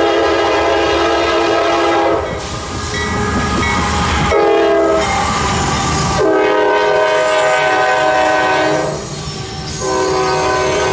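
Freight locomotive's multi-note air horn sounding in blasts as the train passes close by: a long blast ending about two seconds in, a short one around four and a half seconds, a long one from about six to nine seconds, and another starting just before the end. Between blasts the rumble and clatter of the train on the rails comes through.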